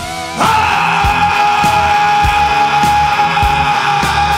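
Rock music with a man's sung voice: after a brief dip, he holds one long note from about half a second in, over steady drum beats.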